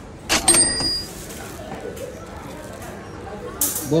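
Checkout beep from a shop's point-of-sale barcode scanner as an item is scanned, set off by a sharp clack of goods handled on the steel counter about a third of a second in. Near the end there is a brief rustle or clatter.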